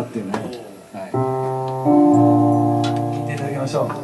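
An electric keyboard plays two held chords, the first about a second in and a second, louder one shortly after that slowly fades away.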